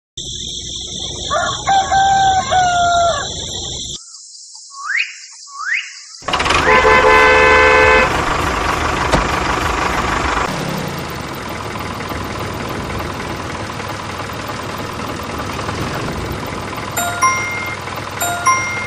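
A rooster crows, then come two rising whistles and a horn blast, followed by a steady engine-like running sound as a miniature toy tractor drives forward, with a few short beeps near the end.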